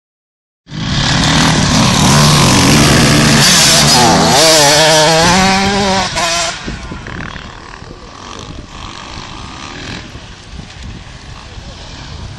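A racing motorcycle's engine revving hard as the bike passes close on a snow track, its pitch rising and falling with the throttle. From about six seconds in it falls away to a quieter drone as the bike rides off.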